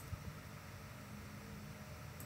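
Faint steady hiss with a low hum underneath: the microphone's room tone, with no distinct sound events.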